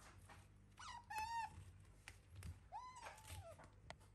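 Two short, high-pitched whining animal calls, each well under a second long, about a second and a half apart; faint.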